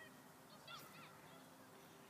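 Near-silent outdoor background with two faint, short bird calls close together about three quarters of a second in.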